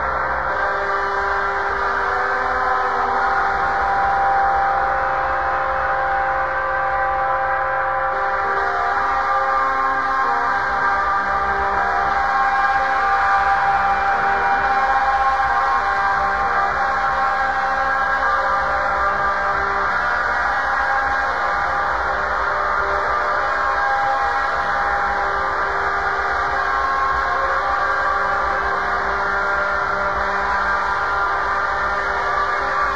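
Experimental drone music: a dense, steady mass of long held tones at an even loudness, with single tones fading in and out and a shift in the chord about eight seconds in.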